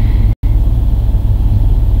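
A loud, steady low rumble with no speech. It cuts out completely for an instant about a third of a second in.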